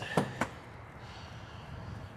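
Motorhome exterior compartment door being unlatched and swung open: two sharp latch clicks about a quarter second apart, then only a low steady background hiss.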